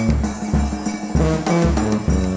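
Brass band with sousaphone, saxophone, trumpets, trombone and drum kit playing a riff in low, repeated notes about two a second, with the horns sounding above.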